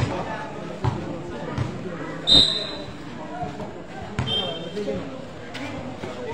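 Basketball being dribbled on a concrete court: a few sharp bounces about three-quarters of a second apart, the loudest one just past the middle of the first half. Two brief high-pitched squeaks, one with the loudest bounce and one later, amid players' and spectators' voices.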